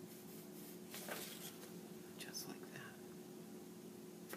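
Faint pencil strokes scratching on paper as a drawing is sketched, a few short strokes about a second in and again between two and three seconds in, over a steady low hum.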